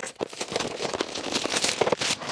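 Crackling and rustling of a headphone box's packaging being handled and opened, a continuous run of small crackles.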